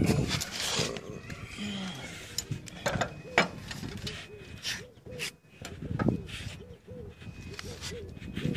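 Scattered clicks and light scrapes of a wrench and hands working a brass compression elbow on a solar collector's copper pipe, with faint voices in the background.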